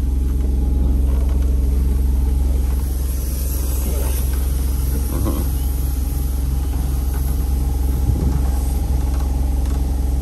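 Boat's onboard generator running with a steady, even low hum, with a few faint knocks from someone moving about in a cockpit locker.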